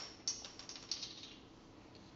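A quick run of light clicks and taps in the first second, then faint room tone.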